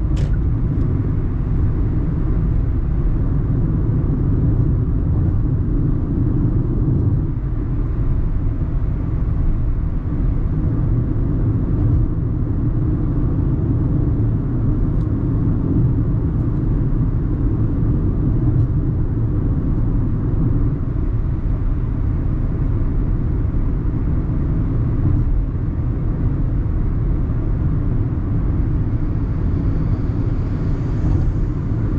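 Steady low rumble of road and tyre noise mixed with the engine, heard inside the cabin of a 2018 Hyundai Tucson 2.0 CRDi, a four-cylinder turbodiesel, cruising at a constant highway speed.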